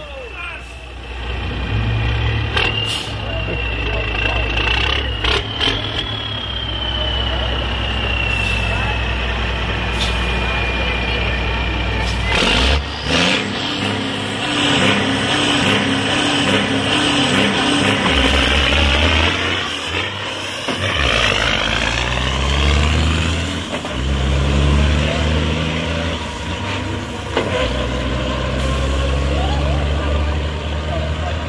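Diesel engine of a bobtail semi-truck tractor drag racing. It runs steadily with a falling whistle at the start line, and a burst of air hiss comes about twelve seconds in. Then it accelerates away down the strip, the pitch climbing and dropping through several gear changes.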